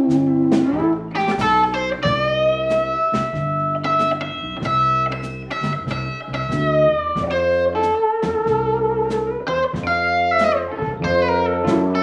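Electric guitar playing a blues lead of sustained, bent notes, backed by bass guitar and a drum kit keeping a steady beat.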